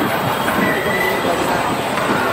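Spinning coaster car rolling fast past on its steel track, wheels rumbling and clattering, with a thin squeal for about half a second around the middle.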